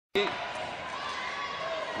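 Volleyball struck during a rally in an indoor sports hall, over the steady din of the arena crowd.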